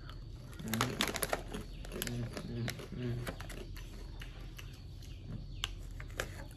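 Crunchy puffed corn snack being chewed with open-mouth crunching and wet mouth noises, with crisp crackles from the foil snack bag being handled. The crackles come thickest about a second in, then scattered.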